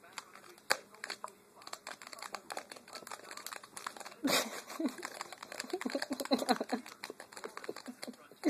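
Cat pawing and scraping inside a cup, a quick string of small scratches and clicks that grows louder and busier from about four seconds in.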